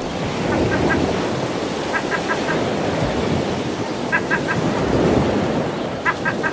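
Water waves washing, a steady rushing noise that swells and eases, with short high chirps in quick runs of three or four, heard four times.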